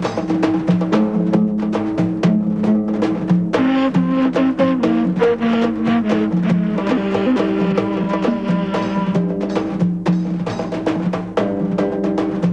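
Film score music: a pitched melody line over fast, steady drumming.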